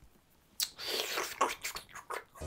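A woman's breathy exhale through pursed lips: it starts suddenly about half a second in and trails off, followed by a few shorter breaths.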